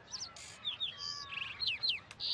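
Birds chirping: a string of short, quick downward-sliding chirps with a brief trill in the middle.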